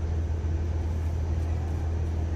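A steady low rumble that holds unchanged throughout, with no distinct event over it.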